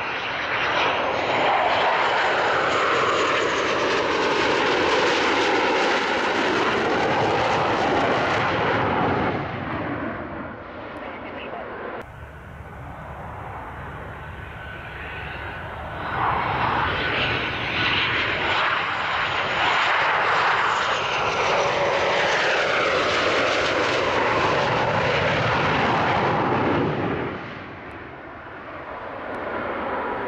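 Two F/A-18 Hornet fighters, each with twin General Electric F404 turbofans, heard in turn as they climb out after take-off. Each gives loud jet noise with sweeping whistle-like pitch shifts as it passes. The first fades about nine seconds in; the second swells a little past halfway and drops away near the end.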